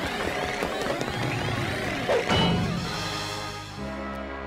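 Dramatic orchestral cartoon score, with a crash sound effect and a falling sweep a little over two seconds in; held brass chords come in near the end.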